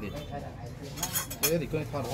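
Metal spoons clinking against ceramic bowls and plates, a quick cluster of light clinks about a second in.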